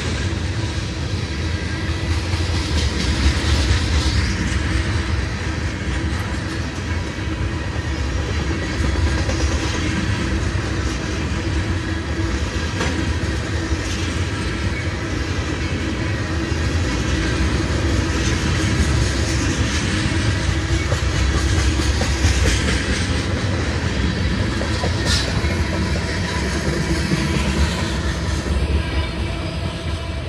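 Loaded crude-oil tank cars of a heavy freight train rolling past close by: a steady rumble of steel wheels on rail with clickety-clack over the rail joints.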